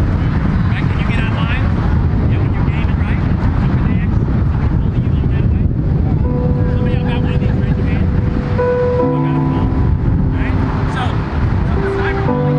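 Wind rumbling heavily on the microphone, with distant voices. About six seconds in, music begins over the loudspeakers in long held notes that grow fuller about halfway through.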